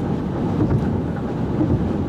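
Steady low rumble of road and engine noise heard from inside a moving car on the highway.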